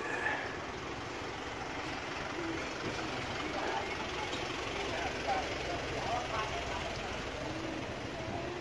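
A pickup truck's engine running with a steady low hum as the truck creeps slowly past close by, with faint voices of people in the background.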